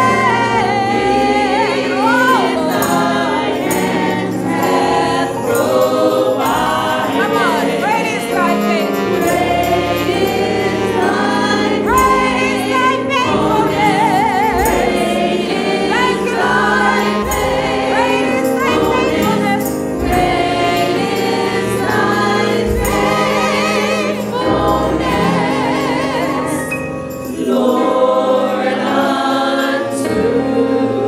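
A church praise team singing a slow gospel praise song, a woman's lead voice with wide vibrato carrying over the other singers.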